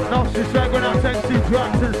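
Electronic dance music from a DJ set: a fast, steady kick-drum beat, each hit dropping in pitch, under synth lines.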